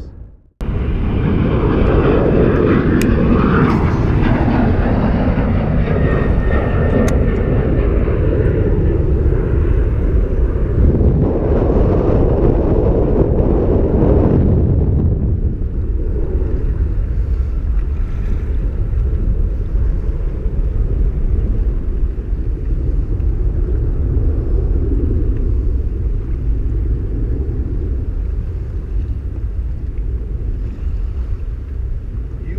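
Wind buffeting the microphone over open water, with a jet airliner passing overhead; the jet's rushing roar is loudest in the first half and fades away about halfway through.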